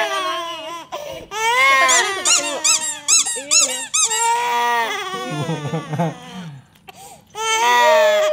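Infant crying in a pool, with a squeaky rubber duck toy squeezed several times in quick succession in the middle, about six short high squeaks.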